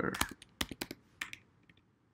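Typing on a computer keyboard: a quick run of key clicks that thins out after about a second and a half.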